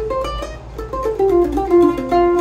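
F-style mandolin strung with Mapes Octacore strings, played as a quick run of single picked notes that step up and down in pitch.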